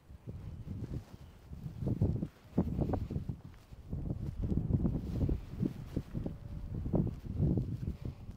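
Wind buffeting the microphone in uneven gusts, a low rumble that rises and falls.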